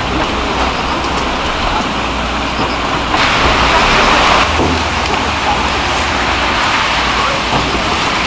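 Steady hiss of a Korean street-stall steamer holding sundae and offal in a perforated steel tray, over a low hum. About three seconds in, a louder rush of hiss swells and lasts about a second.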